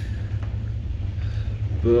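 Steady low rumble inside a gondola cabin as it travels down the cable, with a man's voice starting near the end.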